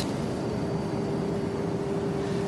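Steady airliner cabin drone: an even rush of noise with a constant hum underneath.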